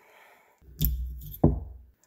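Snap ring pliers working a steel circlip off an ATV transmission drive axle: two sharp metallic clicks about half a second apart, the second louder as the ring comes free.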